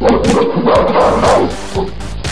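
Loud animal-like vocal sound effect with music, lasting about a second and a half before fading.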